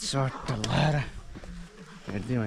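A man's voice making a drawn-out sound without clear words, about a second long, then a short sound after it.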